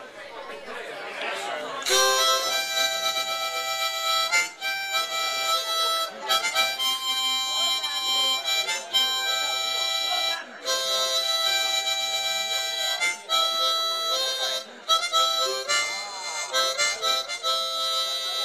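Harmonica, cupped in both hands and played into a vocal microphone as the instrumental intro to a song. It starts about two seconds in and plays a series of held chords and notes broken by short breath gaps, with one bent note near the end.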